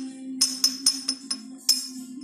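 About six light, sharp clicks of a small magnet tapping against a bicycle's aluminium top tube. The magnet does not stick, the sign that the frame is aluminium rather than steel. A steady low hum runs underneath.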